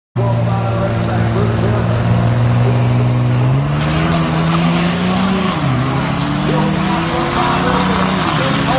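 Turbodiesel pickup truck at full throttle on a drag strip: the engine holds a steady note on the line, then launches about three and a half seconds in, its pitch climbing through the gear and dropping at a shift about five and a half seconds in and again near the end.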